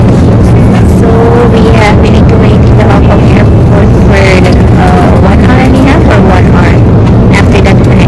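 Steady, loud rumble of an airliner cabin in flight, with indistinct voices over it.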